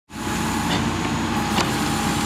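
A small engine on a portable track tool runs steadily at an even pitch, with one sharp click about one and a half seconds in.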